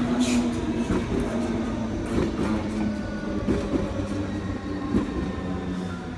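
Steady low hum of a locomotive at a railway station, with scattered clicks of wheels on the rails, slowly getting quieter.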